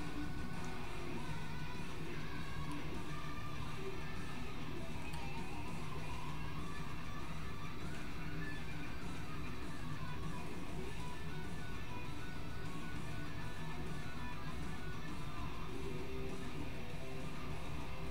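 Hard rock recording with guitar playing steadily at a low level through a speaker, in a stretch without vocals.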